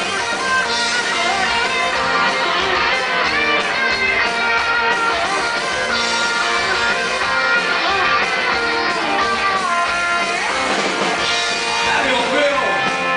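Rock band playing live: an electric guitar leads an instrumental passage over bass guitar.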